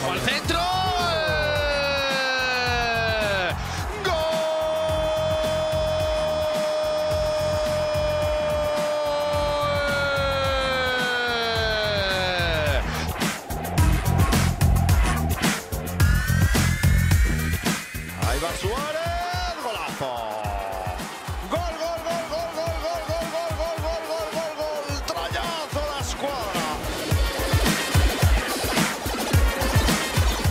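A Spanish-language football commentator's long drawn-out goal shout, held at one pitch for several seconds and then falling away, over electronic background music with a steady beat; more shouted calls follow in the second half.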